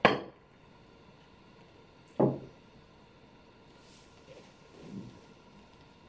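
Billiard balls clicking against each other and the rack as a nine-ball rack is pushed tight by hand: one sharp click at the start and another about two seconds in, with faint handling noise near the end.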